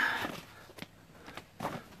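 Old paperwork being handled: a loud rustle of paper as a booklet is picked up and opened, fading within half a second, then a few faint ticks of pages and debris.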